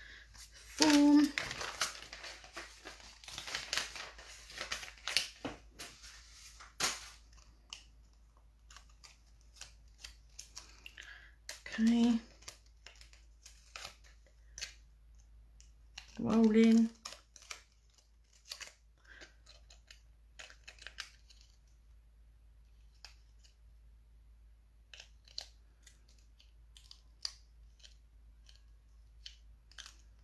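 Scratchy rubbing and crinkling for the first seven seconds or so as a nail is wiped clean with a lint-free wipe, then scattered light clicks and taps as a small nail-product bottle and tools are handled. Three short bursts of voice, about one, twelve and sixteen seconds in, are the loudest moments.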